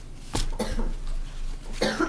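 A person coughing in two short bursts, one near the start and one near the end, with papers being handled.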